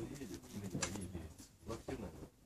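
Faint, muffled voices with two short clicks.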